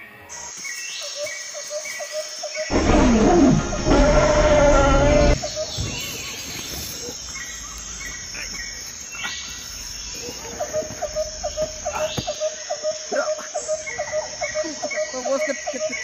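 A loud animal roar about three seconds in, lasting about two and a half seconds, over a jungle ambience of repeated short bird chirps and a steady high-pitched insect drone; from about ten seconds in, a fast pulsing animal call joins.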